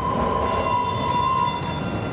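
DART light rail train running past on street tracks: a steady rumble of wheels and motors with a high, steady whine that stops near the end.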